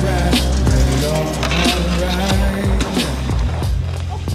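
Hip-hop backing track with a steady bass line and drum beat, no rapping in this stretch. A snowboard scraping and sliding over packed snow is heard in the mix.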